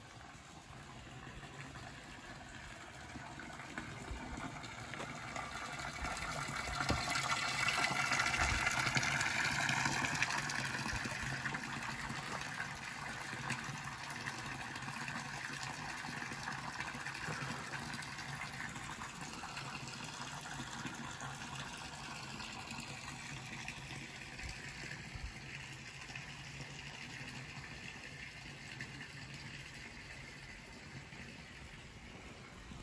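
Water from a stone fountain's spout splashing into its basin. It grows louder until about eight to ten seconds in, then holds steady and slowly fades.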